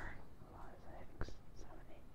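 Faint, low voices between louder stretches of talk, with a small click about a second in.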